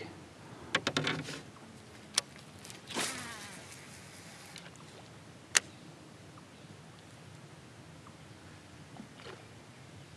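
A cast with a Daiwa Zillion SV TW baitcasting reel: a few clicks as the rod is handled, then the spool whirs for about a second and a half as line pays out, and a single sharp click follows.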